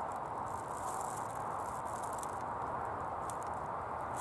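Steady background noise with a few faint clicks as the buttons on a handheld digital hanging scale are pressed.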